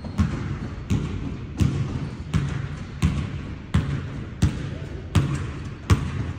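Basketballs being dribbled on a hardwood gym floor: one ball bounces in a steady rhythm of about three bounces every two seconds, with fainter bounces from other balls between them, echoing in the large hall.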